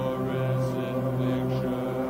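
Drone music from a 1980s home-taped cassette: a steady low hum with layered sustained overtones, and a wavering voice-like layer sounding above it for the first second and a half.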